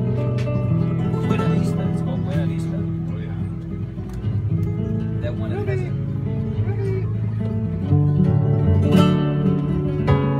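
Two nylon-string flamenco guitars playing a strummed gypsy rumba, with a man's voice singing over them.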